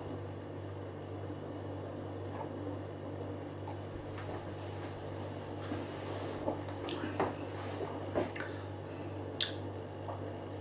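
A man drinking beer from a pint glass, then tasting it: faint lip smacks and mouth clicks scattered through the second half, over a steady low hum.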